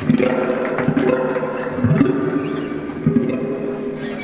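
Live band playing a quiet, slow passage: electric guitar notes picked about once a second over held, ringing tones.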